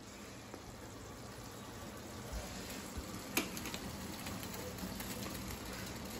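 Low, steady hiss from a gas stove burner heating a lump of charcoal in its flame, with a pot of curry cooking on the next burner. It grows slightly louder, with one light click about three and a half seconds in.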